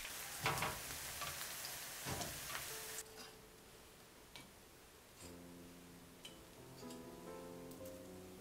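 Mini spring rolls sizzling in shallow frying oil in a pan, with a couple of light clicks, until the sizzle cuts off abruptly about three seconds in. Soft background music with held notes comes in faintly about two seconds later.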